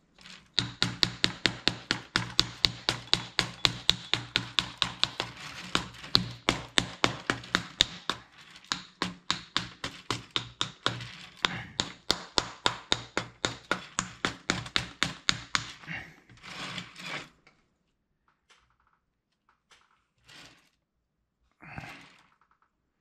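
A fast, even run of sharp taps or scrapes, about four a second, as a wooden tool is worked repeatedly against an oil-based clay figure. It stops after about sixteen seconds, and a few faint scattered clicks follow.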